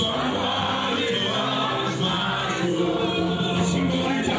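Music: a choir singing a gospel song, voices holding long notes at a steady loudness.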